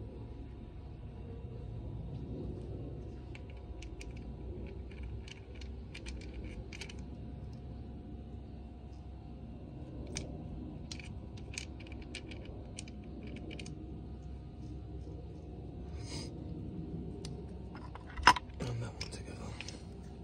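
Steel gearbox gears and shafts from a Kawasaki KX85 transmission clinking as they are slid off and handled, a scattering of light sharp clicks. One much louder metallic clank comes near the end.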